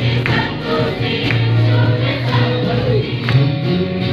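Live Christian worship song: a band with acoustic and electric guitars plays while a group sings along, with a sharp beat about once a second.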